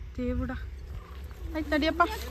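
People's voices: a short, held vocal sound about a quarter second in, then a few words near the end, over a steady low rumble.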